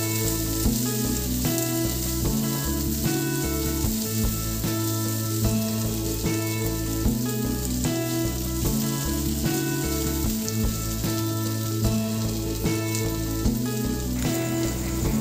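Chicken and vegetables sizzling in a hot oiled pan as they are stir-fried, under background music with a repeating bass line and steady notes.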